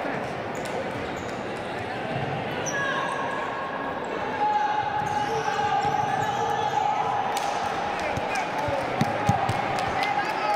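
Futsal match play on a wooden indoor court: the ball being kicked and bouncing, with two sharp kicks near the end, amid players' indistinct shouts echoing in a large sports hall.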